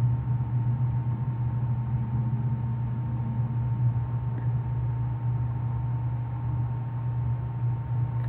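A steady low hum with a faint thin steady tone above it, unchanging throughout, with no distinct events.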